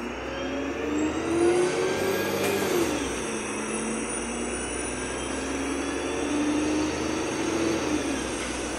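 Onboard sound of a Wright Pulsar 2 single-deck bus on a VDL SB200 chassis accelerating: its engine and driveline note rises in pitch, drops about three seconds in, then rises steadily again.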